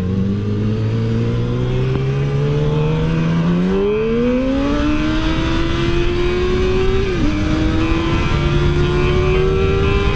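2006 Yamaha R6's inline-four sport-bike engine with a shorty aftermarket exhaust, accelerating with its pitch climbing steadily. About seven seconds in the pitch drops briefly at an upshift, then climbs again.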